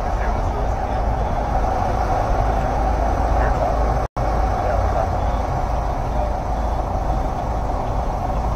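Steady outdoor city-street background noise with a low rumble, typical of road traffic heard through a phone's microphone while walking. The sound cuts out completely for a split second about four seconds in, a glitch in the stream's audio.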